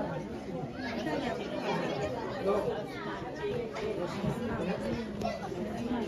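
Many people talking at once: the chatter of a crowd of party guests, several voices overlapping.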